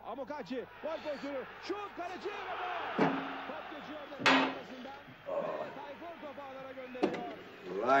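Several sharp knocks over low, indistinct voice-like chatter; the loudest knock comes about four seconds in, with two lighter ones near three and seven seconds.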